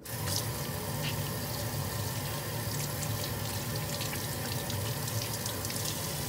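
Water running steadily from a single-lever kitchen faucet into a stainless steel sink, starting suddenly as the tap is turned on.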